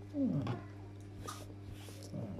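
A short vocal moan that falls in pitch, about a quarter of a second in, over a steady low hum.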